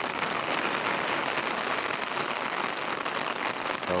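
Rain falling hard and steadily, a dense even patter of drops.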